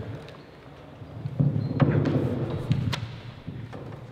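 Handling noise on a handheld microphone: low rumbling bumps with a couple of sharp knocks in the middle, as the microphone is moved and passed between speakers.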